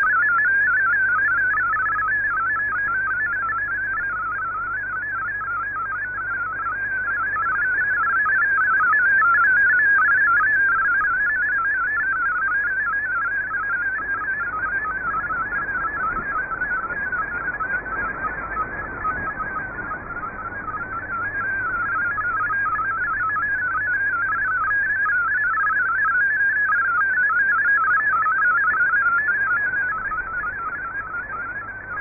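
MFSK32 digital text signal on shortwave: a fast, warbling stream of hopping tones in a narrow band, over receiver hiss. The signal fades slowly up and down.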